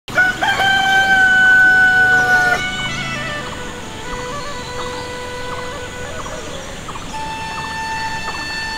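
A rooster crows once, one long call of about two and a half seconds that stops abruptly. Music with long held notes then carries on.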